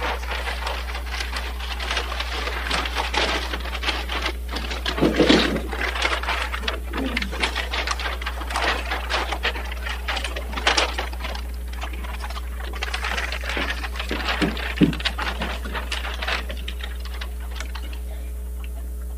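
Paper building plans rustling and crackling as they are unrolled and handled, many short crackles, over a steady low electrical hum.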